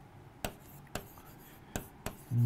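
Marker writing on a board: faint scratching strokes with three short clicks where the tip strikes the surface, about half a second in, at one second and near the end.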